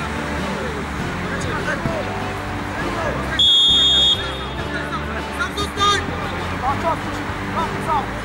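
A referee's whistle gives one short, steady blast about three and a half seconds in, signalling the free kick to be taken, over players' shouts and background music.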